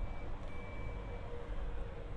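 Low, steady background hum with a faint steady tone over it and no distinct event.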